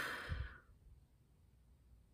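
A woman's soft breathy exhale that fades out within the first second, followed by quiet room tone.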